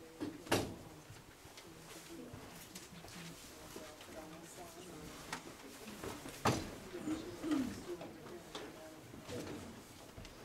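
Low murmur of several people talking in a meeting room as they move about, with two sharp knocks, one about half a second in and a louder one about six and a half seconds in.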